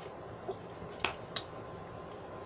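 Lip smacks while tasting a sip of beer: a faint click, then two short sharp smacks about a second in, a third of a second apart.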